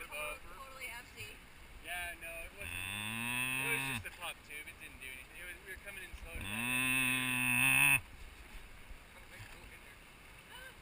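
Cow mooing twice, each a long, deep call of about one and a half seconds, the second louder.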